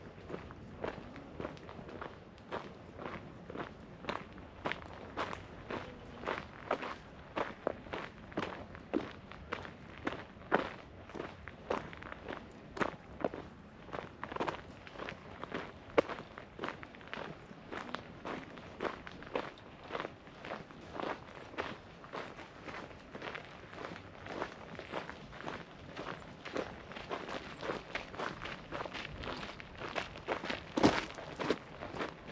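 Footsteps of a person walking at a steady pace, about two steps a second, with a few steps landing louder than the rest.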